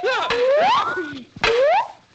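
A man's comic yelps, two squeals that each rise sharply in pitch, with a short knock between them about a second and a half in.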